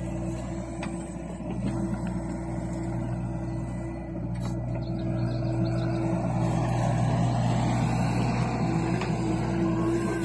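John Deere compact excavator's diesel engine running steadily under working load as the boom and bucket move, growing a little louder in the second half. A faint whine dips and then climbs about seven seconds in.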